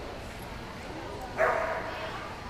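A dog barks once, loud and sudden, about one and a half seconds in, over a low murmur of voices.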